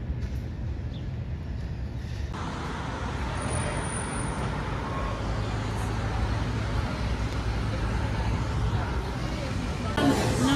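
City street traffic noise: a steady low rumble of road traffic. About two seconds in it switches abruptly to a fuller, slightly louder street sound.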